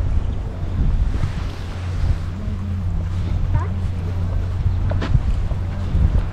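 Wind buffeting the camera's microphone, a steady low rumble, with faint voices in the background.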